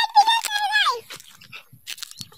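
A high-pitched child's voice for about the first second, then a few faint knocks and a sharp click near the end.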